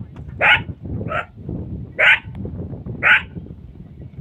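Short, high yelping calls from a wild animal, four of them about a second apart, over a steady low rumble.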